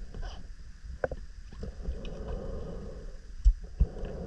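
Muffled underwater noise of a diver swimming through a cave, picked up inside the camera housing: a steady low rumble, a sharp click about a second in, and two heavy low thumps near the end.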